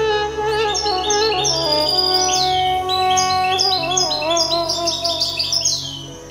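Background music with sustained instrumental notes. From about half a second in, a songbird sings over it in a rapid string of short, high chirps and trills.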